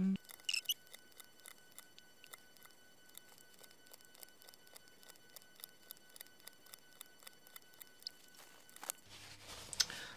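Faint, quick, irregular clicking, several clicks a second, over a steady faint high whine: acrylic paint markers being uncapped, capped and dabbed on paper while swatching, in sped-up audio.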